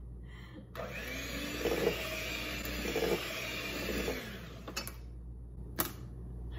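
Electric hand mixer whirring in a bowl of cake batter. It starts under a second in and cuts off about four and a half seconds in, followed by a couple of sharp clicks.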